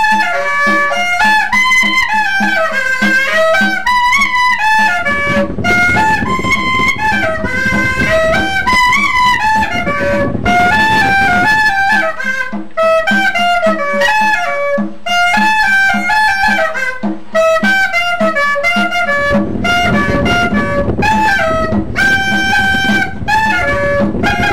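Caña de millo, the Colombian transverse cane clarinet, playing a fast, reedy cumbia melody in quick runs of short notes. For stretches, about five seconds in and again near the end, a low rough sound sits beneath the melody.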